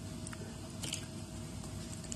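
Raw potato slices being stirred by hand in a plastic basin of water: faint wet squishing with a couple of light clicks as the slices knock together.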